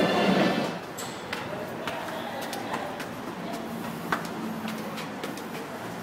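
Guitar music that cuts off sharply about a second in. After it comes a steady background murmur of indistinct voices with scattered sharp clicks and taps, one of them louder about four seconds in.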